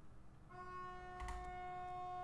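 A faint, steady pitched tone that starts about half a second in and is held without change, with a single click just past the middle.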